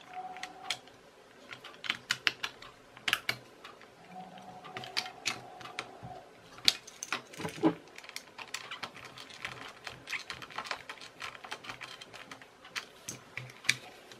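Irregular light clicks and taps of hard plastic parts and a small screwdriver as a toy gun's plastic case is handled and screwed together.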